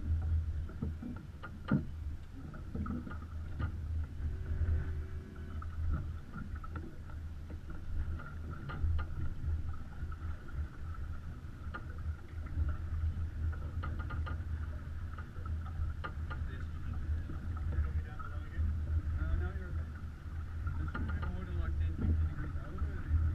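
Steady low rumble of wind and water on a GoPro's microphone aboard a sailing yacht under way under sail, with scattered light clicks and faint, indistinct voices.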